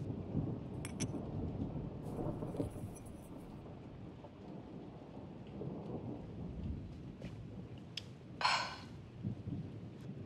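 Low, steady rumbling ambience with a few light clicks, one about a second in, and a short rushing noise near the end.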